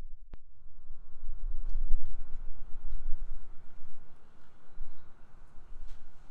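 Low, irregular rumble of wind buffeting the microphone, with a single sharp click just after the start.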